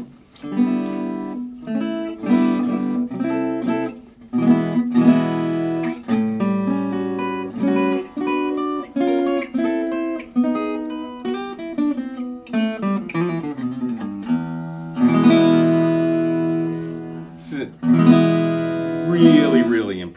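Enya NOVA GO carbon fiber acoustic guitar being played: a steady run of plucked single notes and chords, with a few longer chords left ringing in the second half.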